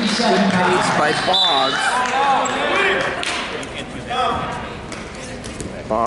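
Voices echoing in a gymnasium, with scattered thuds of wrestlers' feet and bodies on the mat as a bout gets under way.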